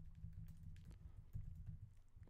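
Typing on a computer keyboard: a quick, irregular run of faint keystrokes.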